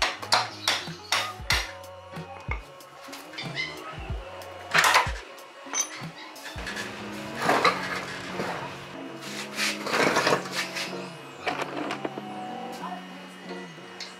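Background music with a steady beat over metal clanks and knocks of hand tools working on a GY6 scooter engine being taken apart: a quick run of sharp strikes in the first second and a half, then louder single clanks about five, seven and a half and ten seconds in.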